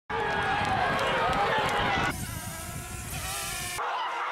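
Voices talking over crackly outdoor noise for about two seconds. Then a quieter, hissier sound takes over, and everything cuts off abruptly just before the end.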